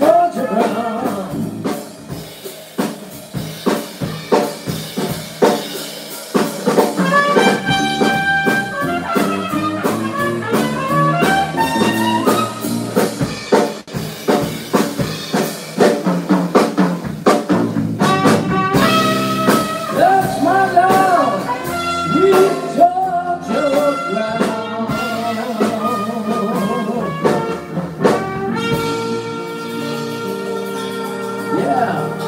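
Small live jazz-blues band playing: trumpet, grand piano, electric bass and drum kit, with the drums keeping a steady beat under shifting melody lines. Near the end the band settles into a long held chord.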